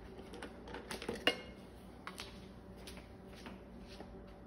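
Dry-erase marker handled and writing on a whiteboard: a few faint clicks and taps about a second in, then scattered short marker strokes.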